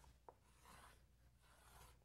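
Faint chalk on a chalkboard, very quiet: a light tap of the chalk about a quarter second in, then soft scratching strokes as a long line is drawn.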